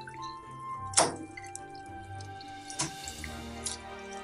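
Background music with steady held notes over a hot frying pan as white sucker fillets are laid into the oil: two sharp pops of spitting oil, about a second in and near three seconds, the second followed by a brief sizzle.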